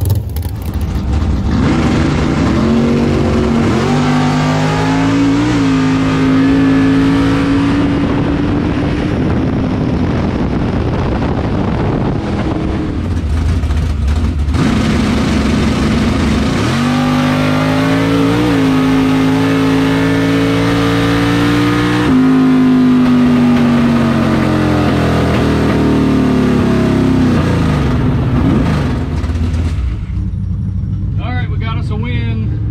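A Chevy Vega drag car's engine at full throttle on a pass: the pitch climbs and holds with a brief hitch, then falls away as the car slows. About halfway through the run is heard again from inside the car, climbing once more before the long fall in pitch.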